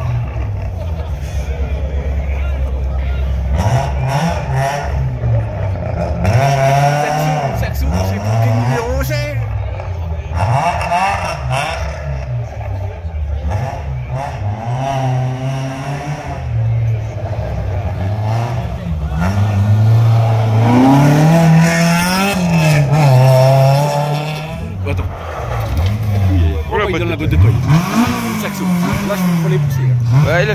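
Rally car engine revving hard, its pitch rising and falling again and again as it works through the gears, growing louder in the second half as the car approaches.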